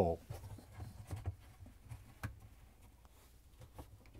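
Faint handling noise of plastic dishwasher pump parts: a few light clicks and rubs as the pump outlet connector is pushed into the supply tube, over a low steady hum.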